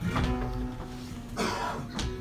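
Flamenco guitar playing a soleá passage between sung verses: plucked notes and strums that ring on. A brief noisy sound cuts in about one and a half seconds in.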